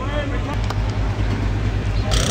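Open-air market background: faint distant voices over a low, steady engine hum.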